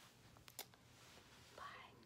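Near silence: quiet room tone, with two faint clicks about halfway through and a soft, whispered "bye" near the end.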